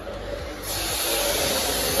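Steady hiss of a fire sprinkler system being filled, with air and water rushing through the pipes; it swells about half a second in and then holds level.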